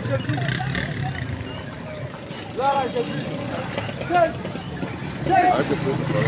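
Street market ambience: scattered voices of people nearby over the steady running of motorcycle engines.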